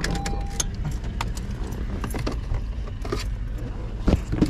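Steady low rumble of a Honda car's engine and road noise heard from inside the cabin, with scattered light clicks and jingles of keys.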